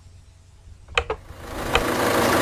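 A quiet low hum at first, then a man's single word about a second in, and from about one and a half seconds in the steady noise of an engine running rises in.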